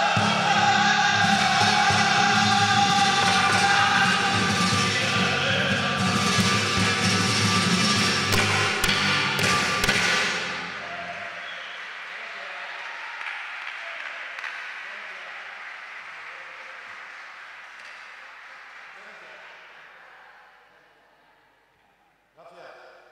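The last sung phrase of a flamenco cante with Spanish guitar, with audience applause breaking out over it. The music stops about ten seconds in, and the applause dies away gradually after that.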